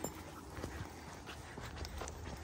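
Faint footsteps on a dirt woodland path strewn with leaves: soft, irregular ticks and crunches over a low, steady rumble.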